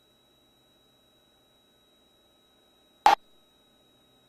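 Near silence on an aircraft intercom feed, with only a faint steady high tone and faint hum; no engine noise comes through. About three seconds in comes a single short, sharp click-like burst.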